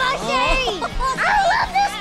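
High, childlike cartoon voices shouting and chattering without clear words, over background music.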